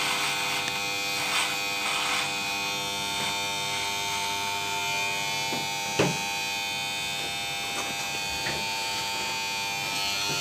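Corded electric hair clipper running with a steady buzz. It is cutting through beard hair with a few rasping strokes in the first couple of seconds, and there is one sharp knock about six seconds in.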